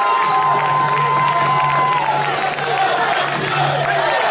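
Arena crowd at a kickboxing bout, cheering and shouting. A long high note is held over the noise and stops about two seconds in, with a low steady drone beneath.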